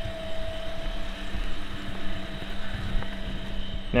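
Toyota Corolla engine idling: a low, steady rumble.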